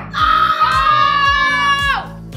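A boy's long wordless shout, held for almost two seconds and dropping in pitch at the end, over background music with a steady beat.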